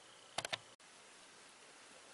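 Three quick light clicks close together about half a second in, then faint steady room hiss.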